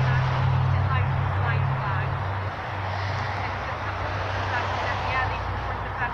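Low, steady motor vehicle engine hum that drops in level about halfway through, with faint voices in the background.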